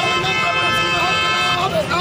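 A vehicle horn sounding one long steady blast that stops shortly before the end, over the voices of a marching crowd.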